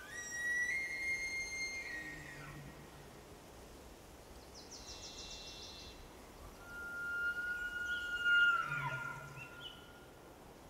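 Forest birds calling over a quiet background hiss: a long held whistle near the start, a short rapid trill around the middle, and a second, louder long whistle near the end that breaks into falling notes.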